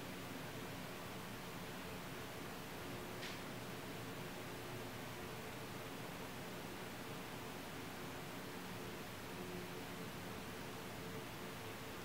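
Steady low hiss with a faint hum: room tone, with one faint tick about three seconds in.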